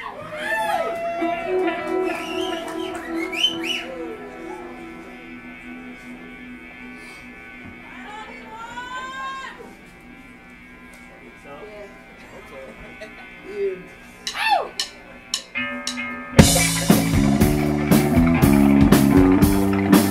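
A steady held drone with a few whistle-like rising-and-falling glides over it, then about sixteen seconds in the psychedelic rock band comes in loud with drum kit and electric guitars.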